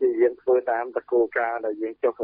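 Only speech: one voice talking steadily, as a Khmer radio news broadcast.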